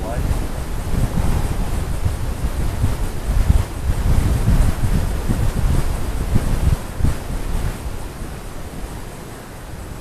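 Wind buffeting the microphone in uneven gusts, a low rumble that eases off in the last few seconds.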